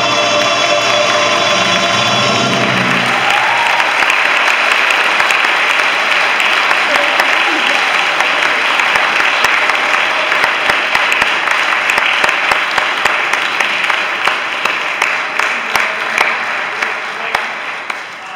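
The final held chord of the choir, tenors and string orchestra ends about two and a half seconds in, and audience applause takes over, thinning to scattered claps and fading near the end.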